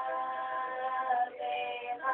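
Female vocalists singing together to acoustic guitar, holding one long note that ends about a second and a quarter in before a new note begins.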